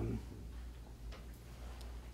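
Room tone of a lecture recording: a steady low hum with a few faint, irregular clicks.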